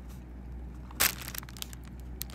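Close-up chewing of food with one sharp, loud crunch about a second in, then a few smaller crunching clicks.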